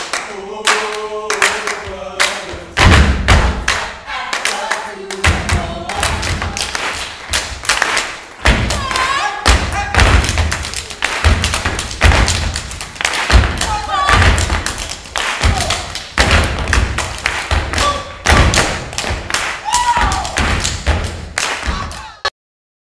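Step dancers stepping on a stage floor: hard, rhythmic stomps, claps and slaps, with short shouted calls among the beats. A voice is held on a few notes over the first two seconds or so, before the stomping comes in about three seconds in.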